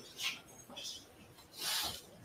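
Short rustling and scraping noises picked up by a courtroom microphone: three brief bursts, the last one the longest and loudest near the end.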